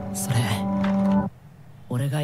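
Anime dialogue over soft background music: a young man's voice in Japanese trails off on a long drawn-out word over a sustained chord. Both stop abruptly about 1.3 s in, and new speech begins right at the end.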